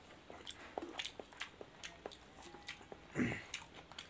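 Close-up eating sounds: wet chewing and lip smacks as two people eat rice and boiled chicken with their hands, in a string of short irregular clicks. A louder brief mouth sound comes a little after three seconds in.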